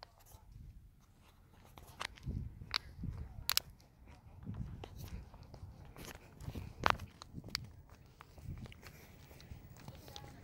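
Footsteps of someone walking on an asphalt road, soft irregular thuds about once a second, with a few sharp clicks among them, the loudest about seven seconds in.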